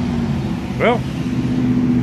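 A steady low mechanical hum from a running motor or engine, holding an even pitch, with one spoken word about a second in.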